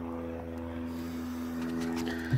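A steady machine hum holding one pitch, with a few faint clicks in the second half as hands handle the outboard's cowling.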